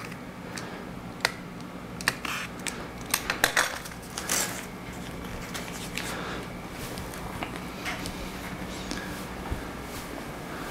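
A utility knife blade cutting and scraping along the damp edge of rice paper on a glass sheet, a string of short clicks and scrapes over the first few seconds, then a brief rustle as the cut paper strip is pulled away. A low steady hum runs underneath.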